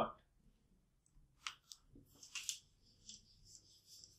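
Cloth wiping a whiteboard: a couple of faint clicks about a second and a half in, then a series of light rubbing swishes, a few a second.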